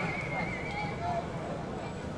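Players' voices calling across an open-air football pitch over steady stadium ambience. A thin, high, wavering whistle-like tone runs for about the first second.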